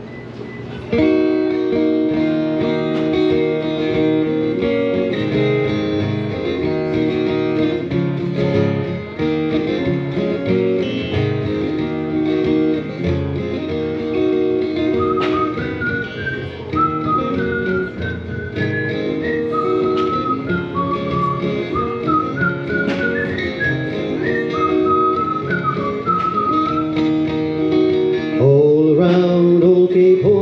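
Acoustic guitar strummed as the song's intro, starting about a second in. From about halfway, a whistled melody carries the tin-whistle part over the guitar, and a singing voice comes in near the end.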